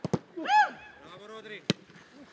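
Sharp thuds of footballs being kicked in a close-range shooting drill: two strikes in quick succession at the start and another near the end. A man shouts "Hey!" about half a second in.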